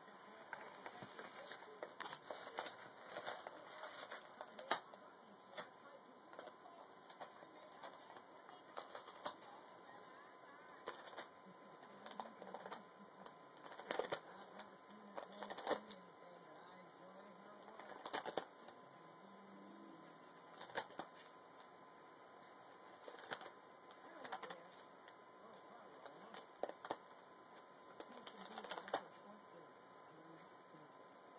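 A cat chewing and tearing at paper: soft, irregular crinkling and clicking, with a handful of louder tears scattered through.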